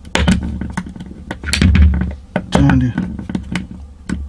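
Pliers clicking and scraping against a small aluminium retaining ring on a starter-solenoid copper contact as it is pried off: irregular sharp metallic clicks, over a steady low hum.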